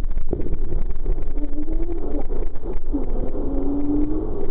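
Water rushing and rumbling through an enclosed plastic tube water slide as a rider slides down it. Two long held tones sound over the rush in the second half.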